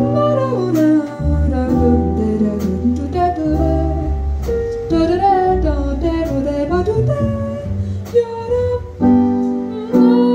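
Live jazz quartet: a female voice sings a gliding, bending melody over plucked double bass notes, piano and drums.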